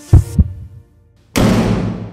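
The end of the outro music: two deep drum thumps in quick succession like a heartbeat, then, about a second later, one loud final hit that rings for about a second.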